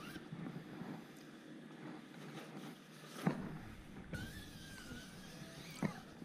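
Faint rustling of polyester aircraft covering fabric being handled and trimmed, with two short sharp clicks, about three seconds in and near the end.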